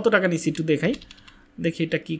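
A man speaking in short phrases, with the clicking of typing on a computer keyboard, and a brief pause in the talk about halfway through.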